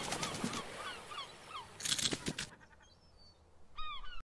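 Cartoon sound effects on an animated end card: as the music dies away, a run of short rising-and-falling chirps, a brief rush of noise about two seconds in, then a short honk-like call near the end.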